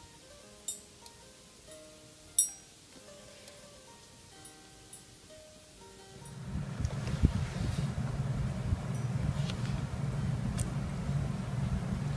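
Freshly cast pewter spoons pinging as they cool: a few sharp, isolated metallic pings over the first half, the clearest about two and a half seconds in, over soft background music. About six seconds in, a steady low hum takes over.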